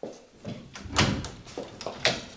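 Wooden door being opened: a series of clicks and knocks from the lever handle, latch and door, the loudest about a second in.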